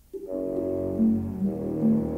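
Orchestral film score: after a brief near-silent pause, a low brass chord enters and is held, with short louder accented notes from about a second in.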